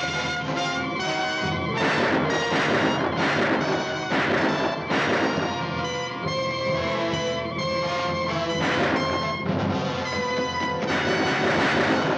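Loud, dramatic orchestral film score with sustained chords, punctuated by a series of crashing accents, clustered in the first five seconds and again near the end.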